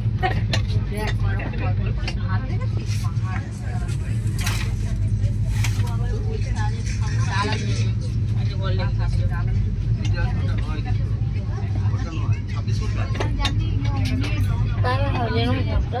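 Inside a moving LHB passenger coach: a steady low rumble of the train running at speed, with sharp clacks from the wheels and track. Passengers talk indistinctly in the background, more plainly near the end.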